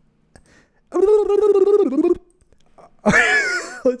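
A man's voice holding a throaty, slightly wavering tone for about a second, a made-up vocal noise recorded as a sound-effect prompt for voice cloning. He laughs near the end.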